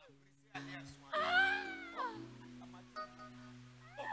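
A woman's drawn-out wailing cry, about a second long, rising in pitch and then falling away, over sustained background music chords.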